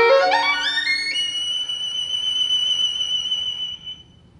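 Violin playing a fast rising run up to a very high note, held for nearly three seconds and then broken off just before the end.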